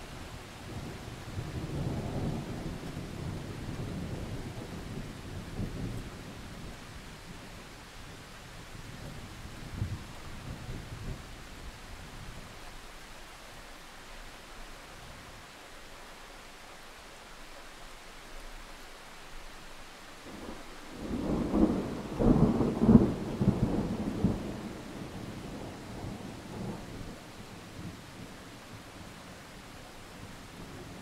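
Steady heavy rain with thunder: a low rolling rumble builds in the first few seconds, and a louder, crackling peal of thunder breaks about 21 seconds in and dies away over a few seconds.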